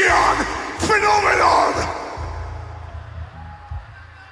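A death metal vocalist's harsh growled shouts through the PA. There are two long shouts, the second ending about two seconds in, over a low rumble that fades away.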